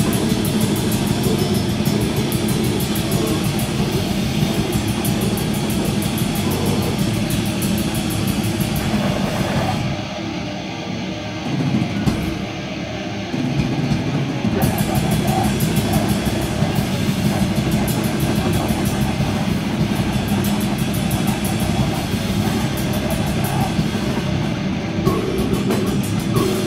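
Grindcore band playing live at full volume, with heavily distorted guitar and pounding drums. About ten seconds in, the sound thins out and quietens for around four seconds with the cymbals gone, then the full band crashes back in.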